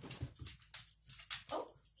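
A dog moving about close by on a hardwood floor, making a quick, irregular run of short breathy rasps, about four a second, with a few soft low thuds in the first half second.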